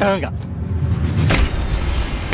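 Car engine idling, heard from inside the cabin as a steady low rumble, with one sharp click about a second and a half in.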